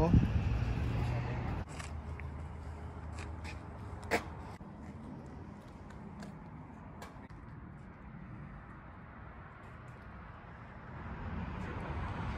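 Car engine idling, a low steady hum. It drops to a quieter rumble about a second and a half in, with a single knock about four seconds in.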